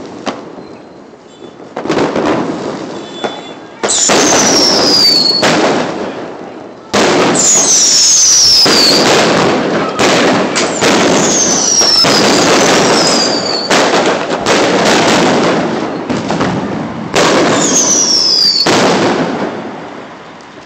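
Fireworks going off in a string of loud crackling blasts, each lasting two to three seconds. Four of the blasts carry a whistle that falls in pitch.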